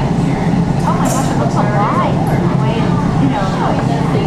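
Steady low rushing of a glassworker's gas bench torch heating a glowing gob of glass, unbroken through the whole stretch, with people's voices talking over it.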